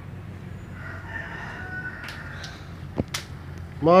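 A rooster crowing once, faint and distant, about a second in. Two sharp clicks follow near the end.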